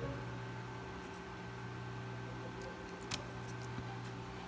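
Steady electrical hum with a low buzz at multiples of the mains frequency, from the amplifier board and its bench supply. A single sharp click comes about three seconds in.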